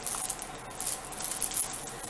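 Clear plastic bags crinkling and rustling as small cardboard boxes inside them are handled.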